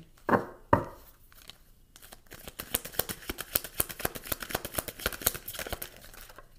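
Oracle card deck being handled and shuffled by hand: two knocks early on, then a rapid run of quick clicks from the card edges for about three seconds.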